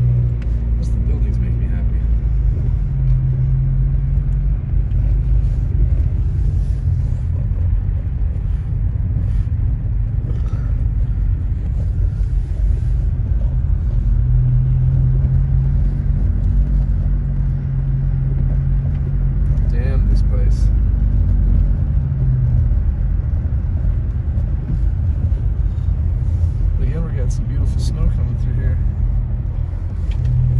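Steady low rumble of a car driving on a wet, snowy road, with engine hum and tyre noise heard from inside the cabin.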